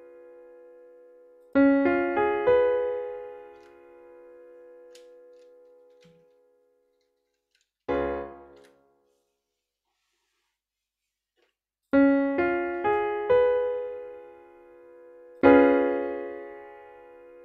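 Computer piano sound playing a four-note seventh chord (root, third, fifth, seventh) from the harmonic minor scale for an ear-training chord dictation. The notes come in one after another and are left to ring and fade. A brief, cut-off chord follows about eight seconds in, the four notes are spread out again about twelve seconds in, and the full chord is struck at once near the end.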